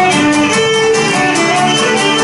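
Cretan lyra bowing a syrtos melody, with a laouto strumming the rhythm beneath it.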